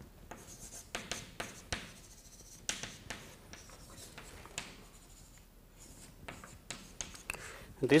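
Chalk writing on a blackboard: a run of short taps and scratches as words are written, sparser around the middle.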